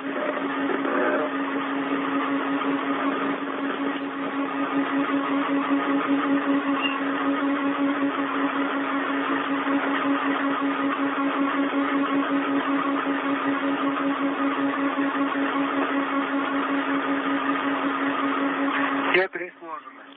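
Steady whirring hiss with a low hum over an open radio channel, cutting off suddenly near the end.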